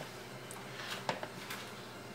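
Quiet room tone with a few faint clicks and scrapes, mostly about a second in, from a spatula stirring grits in a stainless steel saucepan.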